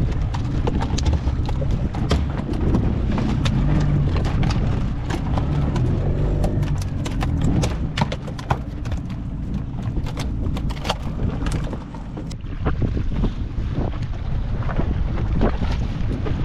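Freshly caught mahi-mahi flapping on a fibreglass boat deck, its body and tail slapping the deck in quick, irregular knocks, over a steady low rumble of wind on the microphone.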